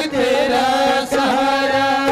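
Live Rajasthani devotional bhajan: a male voice sings long, wavering held notes over a steady harmonium accompaniment.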